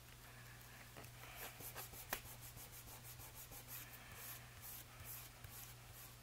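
Fingertips rubbing and pressing a freshly glued paper pocket flat onto a paper tag: faint, repeated scratchy paper-on-paper strokes, with a couple of light taps in the first two seconds.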